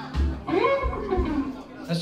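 Live blues-rock band playing: electric guitar notes bending up and down over bass guitar and a steady kick drum.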